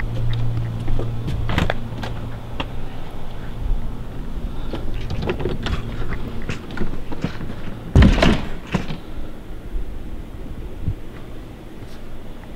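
A back door being opened and shut, with scattered knocks and clicks and one louder thump about eight seconds in.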